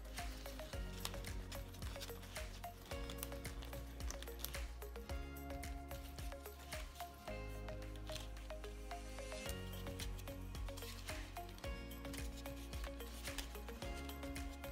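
Quiet background music with held notes that change every second or two. Under it, faint crackling and rustling of orchid bark potting medium being pressed down by hand in a plastic pot.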